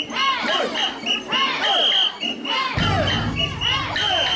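Crowd of mikoshi bearers shouting a rhythmic chant in unison as they carry the portable shrine, with short, sharp whistle blasts repeating in time with the chant. A low rumble comes in about three quarters of the way through.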